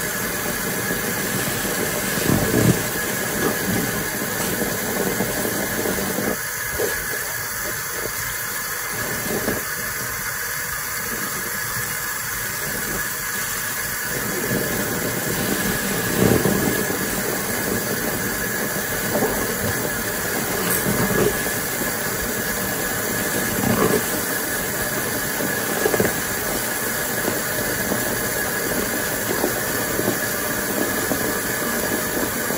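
Large soft grout sponge squeezed repeatedly in soapy water and foam: squelches every few seconds over a steady fizzing hiss of foam.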